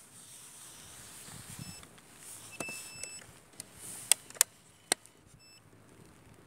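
Optical fibre fusion splicer giving several short, high electronic beeps as fibre is loaded into it. Three sharp clicks come between about four and five seconds in and are the loudest sounds.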